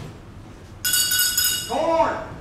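A sudden bright ringing clink with many high tones, starting just under a second in and dying away within about a second.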